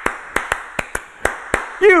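Hands clapping a short rhythm for others to echo back: seven sharp claps in an uneven, syncopated pattern.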